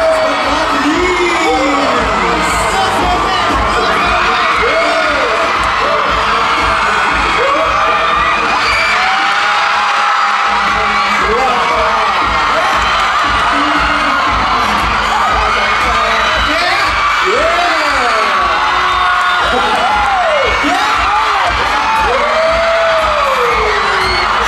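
A large concert crowd of fans screaming and cheering without a break, many high voices shrieking and whooping with rising and falling pitch.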